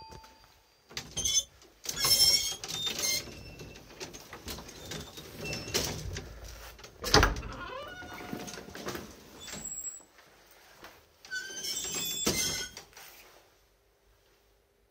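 Collapsible metal scissor gate of an old cage lift being slid open with a jangling metal rattle, a single loud thud about seven seconds in, then the gate rattling again as it is pulled shut near the end.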